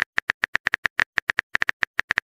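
Simulated phone-keyboard key taps from a texting app: a quick, uneven run of short clicks, about eight a second, as a message is typed.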